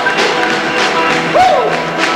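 A live band playing sustained chords behind a stage act, with a brief voice sounding near the end.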